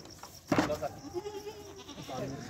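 A goat bleats once, a single steady call lasting about a second. A sharp knock comes just before it, about half a second in.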